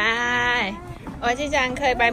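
A high-pitched voice holding one long drawn-out call for under a second, then quick wavering vocal sounds.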